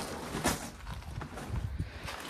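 A sharp click about half a second in, then a few soft low knocks and rustling: handling noise as the removed jet ski seat is set aside.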